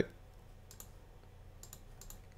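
A few faint clicks of a computer mouse in two quick pairs, one just under a second in and one near the end.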